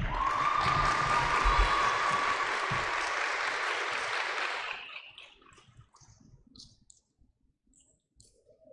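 Applause from a small audience, with a steady high tone running through its first three seconds, dying away about five seconds in. Near silence with a few faint clicks follows.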